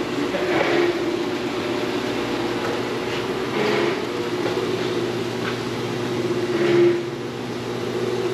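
Steady mechanical hum of a running machine at constant pitch, with three brief hissing surges over it.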